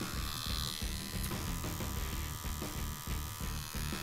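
A rotary tattoo machine running with a steady electric buzz.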